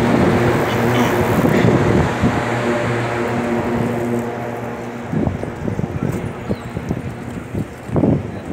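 A steady low-pitched hum that slowly fades out over about five seconds, followed by irregular short knocks and bumps over street noise.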